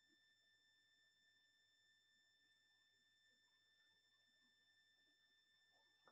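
Near silence, with only a faint, steady, high-pitched whine.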